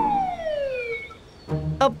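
Cartoon sound effect: a single whistling tone that slides steadily downward and fades out about a second in.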